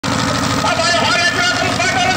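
Men's voices calling out over the steady low rumble of a boat engine running.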